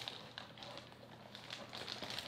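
Faint crinkling of a plastic bag wrapped around an external hard drive, with soft rustles against the foam insert as the drive is lifted out of its box.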